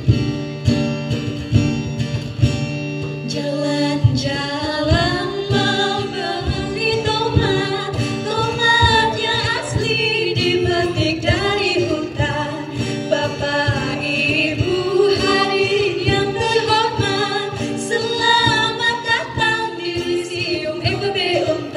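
Live guitar strumming chords, joined about three and a half seconds in by a singer carrying a wavering melody over the accompaniment.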